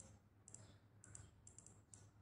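Faint, high ticks of a smartphone timer's scroll wheel as the minutes are spun, coming in short quick runs.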